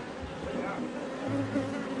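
Many honeybees buzzing at once in a steady hum, the colony stirred up around its hives.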